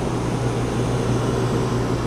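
Steady hum of the motorhome's roof air conditioners running, a constant low tone under a whoosh of fan air.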